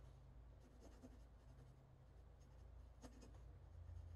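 Faint scratching of a blue colored pencil on paper in a few short strokes as lines are sketched, over a low steady hum.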